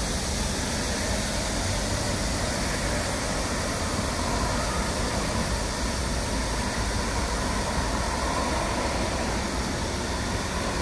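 Steady road traffic noise, with cars and trucks passing close by.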